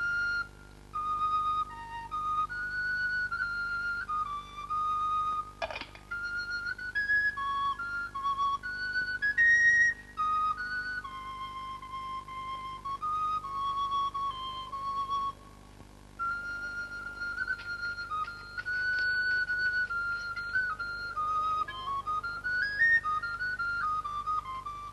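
Background music: a solo flute playing a slow melody of held notes that step up and down, with a couple of brief pauses.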